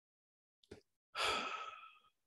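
A man's audible breath, a sigh-like rush of air lasting under a second and fading out, drawn in the second half of a pause in his speech. It is preceded by a faint mouth click.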